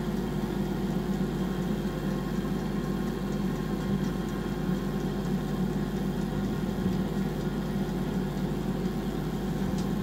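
Air fryer running, its fan giving a steady, even hum.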